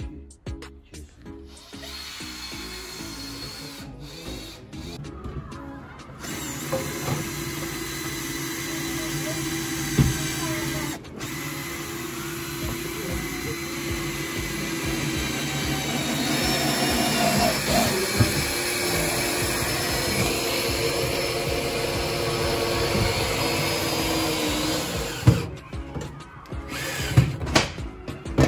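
Cordless drill/driver running in long steady stretches of motor whine, with a few sharp knocks, as screws are driven through corrugated metal roofing sheets.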